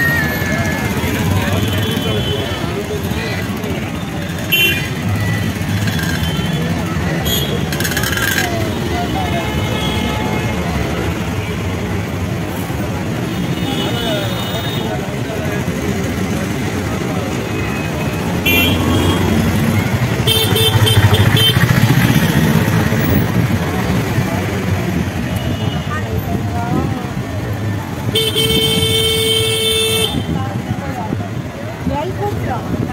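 Busy street crowd chatter over motorcycle and car traffic, with vehicle horns tooting several times; the longest honk comes near the end.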